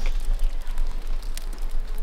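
Water dripping off limestone rock inside a cave: a few faint drips over a steady low rumble.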